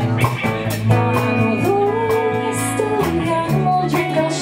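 Live rock band playing: guitars and bass under a woman's voice, which holds a long, wavering note through the middle.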